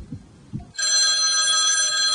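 Desk telephone ringing: one long, loud ring that starts about three-quarters of a second in.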